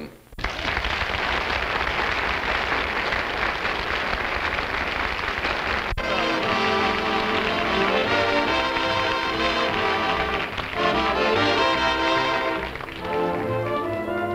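Studio audience applause for about six seconds, cut off abruptly, then a studio orchestra with brass playing a short musical bridge.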